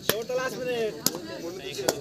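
Shouting voices from a kabaddi court, with three sharp slaps or claps: one at the start, one about a second in and one near the end.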